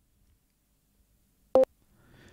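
Near silence, then a single short electronic beep about one and a half seconds in.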